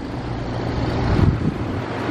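Wind rushing on the microphone over a steady low motor hum, with a stronger low rumble about a second in.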